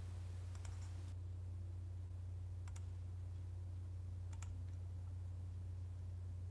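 Steady low hum with a few faint clicks: about a second in, near three seconds, and just past four seconds.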